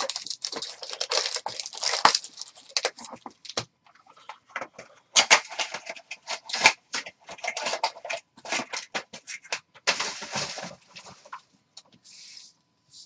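Foil-wrapped trading-card packs and their cardboard box crinkling and rustling as the packs are pulled out by hand and set down: dense crackling with a brief lull about four seconds in.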